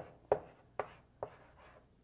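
Chalk writing on a blackboard: a quick run of sharp taps and short scratches as strokes are made, about two a second, stopping shortly before the end.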